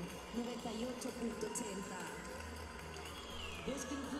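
A voice speaking quietly, as broadcast commentary low in the mix, with a short falling tone near the end.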